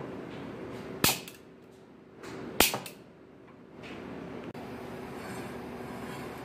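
Gas hob burner being lit under a frying pan: two sharp clicks about a second and a half apart, then from about four seconds in a steady hiss of the gas flame.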